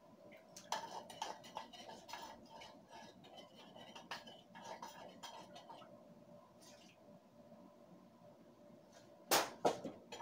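Kitchen clatter of pots, containers and utensils: a run of light clinks and scrapes for the first few seconds, then two loud knocks in quick succession near the end.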